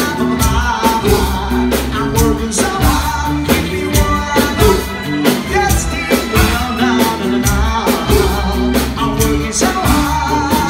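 Live rock and roll band playing, with a steady drum beat, bass and electric guitar under a lead singer's voice.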